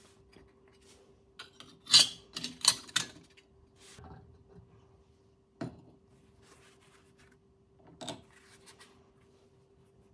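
Metal parts handled in a cast-iron drill press vise: a thin steel plate and the drill chuck set into the vise jaws, with a cluster of clinks and scrapes about two to three seconds in, then single sharp knocks in the middle and about eight seconds in. A faint steady hum sits underneath.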